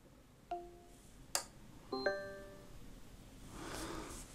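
An Amazon Alexa smart speaker answering a smart-home voice command: a short low beep, then a sharp click, then a brief multi-note confirmation chime about two seconds in, as a socket of the Gosund smart power strip switches on.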